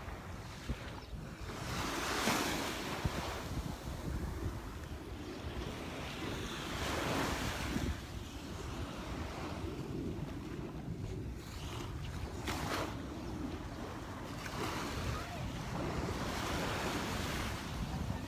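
Small Gulf of Mexico waves washing up on the sand, the wash swelling several times, every few seconds, with wind rumbling on the microphone underneath.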